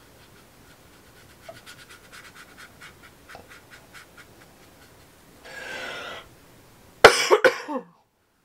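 A person coughing, a sharp quick run of several coughs near the end, just after a breath is drawn in. Before that, faint quick scratching strokes of a watercolour brush on heavy watercolour paper, about five a second.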